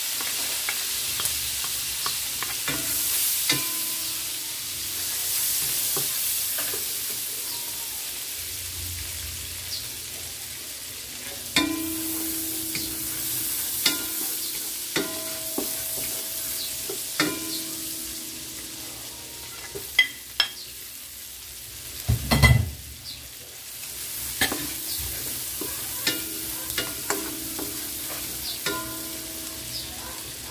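Shallots and garlic sizzling in a nonstick wok while a wooden spatula stirs and scrapes them. Sharp taps of the spatula against the wok leave the pan ringing briefly, with the heaviest knock about two-thirds of the way through.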